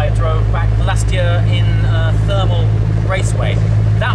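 A man talking over the steady low hum of an idling car engine.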